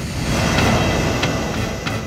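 Dramatic sound-effect swell over a shocked reaction: a loud rushing noise that starts suddenly, with a few faint clicks in it, and dies away near the end.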